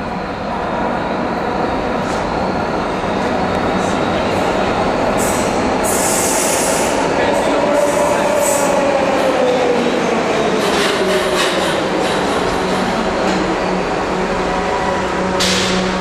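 SEPTA subway train pulling into an underground station, its running noise growing louder as it arrives. A whine falls steadily in pitch as it slows, a few brief high-pitched squeals or hisses break in, and a steady low hum sets in as it comes to a stand.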